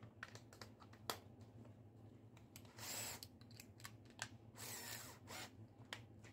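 Faint clicks and knocks of a cordless drill and bit being handled on a drilling jig, with two short bursts of the drill motor spinning, about three and five seconds in.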